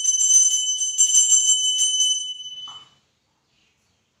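Small brass puja hand bell rung rapidly during aarti, a bright steady ring with several strokes a second; the ringing stops about two seconds in and fades out, followed by silence.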